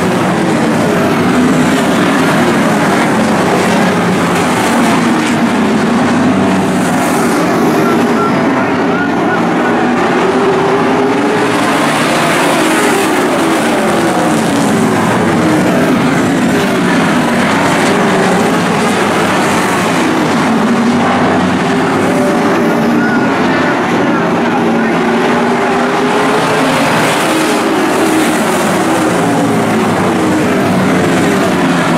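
A pack of late model stock cars' V8 engines running at race speed, loud and continuous. Many engine notes overlap, their pitch sweeping up and down again and again as the cars lift for the turns and power off them.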